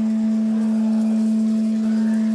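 A single sustained synthesizer note held steady, a pure, even tone with a faint higher overtone, left droning as the song ends.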